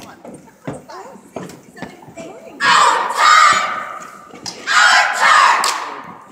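Cheerleading squad shouting a cheer in unison: two loud shouted phrases, the first about two and a half seconds in, the second about a second after the first ends.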